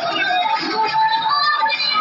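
Music with singing.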